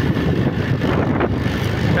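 Wind buffeting the microphone over the steady running of a motorbike riding along a road.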